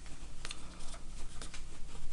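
Origami paper being folded and creased by hand, giving several short, crisp crinkles and rustles.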